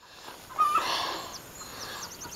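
A short bird chirp a little over half a second in, over a soft steady hiss.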